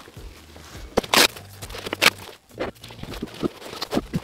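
Handling sounds from a nylon backpack and a steel ruck plate: fabric rustling with a few short, sharp knocks and scrapes, the loudest about a second in and another about two seconds in.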